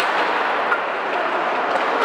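Steady ambient noise of an ice hockey rink with play under way: an even wash of arena sound with no distinct impacts standing out.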